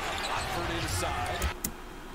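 Basketball game broadcast sound: arena crowd noise with the ball bouncing on the court and faint commentary; the crowd noise drops away about three-quarters through, followed by a sharp knock.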